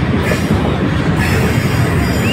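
Freight train of covered hopper cars rolling past at close range: a loud, steady noise of steel wheels running on the rails.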